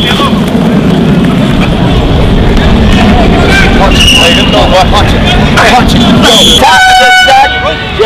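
Shouting players and coaches over a low rumble on a football practice field. There are short high whistle tones about halfway through, and a single horn blast of under a second near the end.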